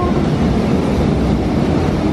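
Steady rumble of a running children's fairground car ride as its cars roll round the undulating track.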